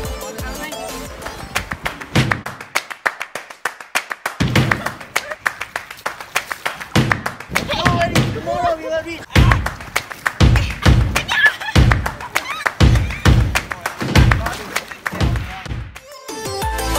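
Background music that is sparse and quieter at first, then from about four seconds in settles into a strong, steady beat of about two hits a second.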